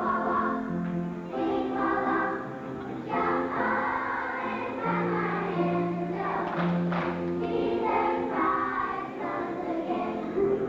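A choir of young children singing a song together.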